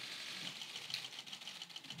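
Faint, rapid clicking of camera shutters over low room noise.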